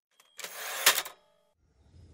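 Typewriter carriage return: the margin bell dings, the carriage slides back with a rasp and stops with a sharp clack, leaving a brief ring.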